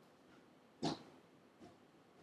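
Quiet room tone with one short breath or sniff from a person near the microphone a little under a second in, and a fainter one near the end.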